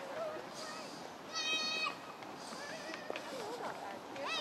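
A young child's high-pitched call, one flat note held for about half a second around a second and a half in, with faint children's voices in the background.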